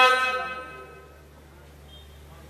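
A man's chanting voice holds a long note that dies away within the first second. A low, steady hum remains.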